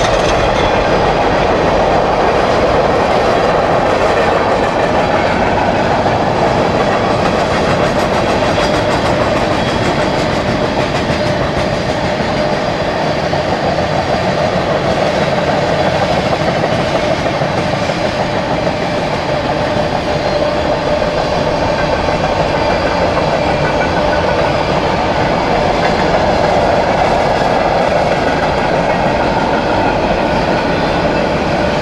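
Freight train of covered hoppers and tank cars rolling steadily past at speed: a continuous, even rumble of steel wheels on rail.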